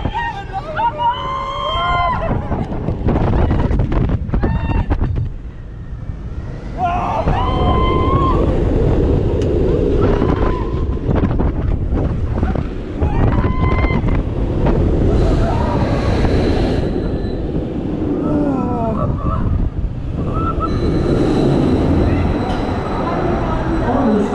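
On-ride sound of a Premier Rides SkyRocket II roller coaster: wind rushing over the microphone and the train rumbling on the track. Riders yell and scream several times over it, near the start and again repeatedly through the ride.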